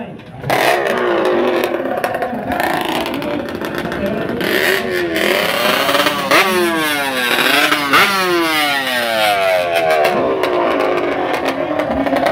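Two-stroke drag-racing motorcycle engine revving hard at the start line. From about four seconds in the pitch climbs in quick blips again and again, then falls away in long sweeps near the end.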